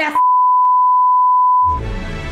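Television colour-bar test tone: one steady, unwavering beep lasting about a second and a half. It is the signal of a broadcast cut off the air. Music starts as the beep ends, near the end.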